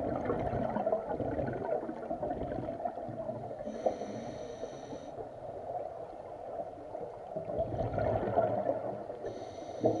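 Scuba diver breathing through a regulator underwater: a whistling inhale through the regulator about four seconds in and again near the end, with gurgling exhaled bubbles between.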